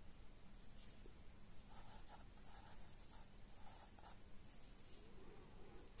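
Pencil writing on a paper workbook page: a few faint scratching strokes as a short word is written in.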